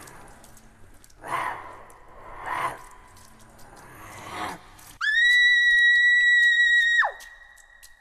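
A long, piercing scream held on one high pitch for about two seconds, dropping sharply away at its end, after three short noisy bursts.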